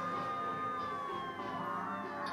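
Police siren sound effect from a rap track's intro: one long wail that holds its pitch, then slowly falls through the second half.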